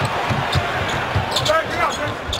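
Basketball dribbled on a hardwood court, its bounces coming a few times a second over steady arena crowd noise. A brief voice is heard about one and a half seconds in.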